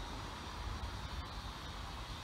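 Steady outdoor background noise: a low rumble with a light hiss and no distinct events.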